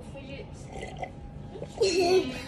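A woman quietly sipping and swallowing a drink from a mug, then a voice starts loudly just before the end.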